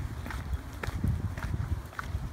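Brisk footsteps on a gritty gravel path, about one and a half steps a second, over a steady low rumble on the microphone.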